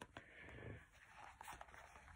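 Near silence: room tone with a few faint soft ticks and rustles from a card being handled.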